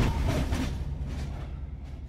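Train sound effect: the rumble of a passing train fading steadily away into the distance.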